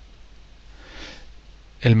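A short, faint sniff, a breath drawn in through the nose, about a second in, followed near the end by a voice starting to speak.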